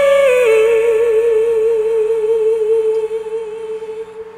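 A female singer holds a long sung note with a steady, even vibrato at the end of a line, stepping down into it just after the start and fading out in the last second. Faint accompaniment sits underneath.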